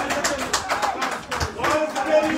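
Football spectators' voices calling and chanting over one another, with claps running through.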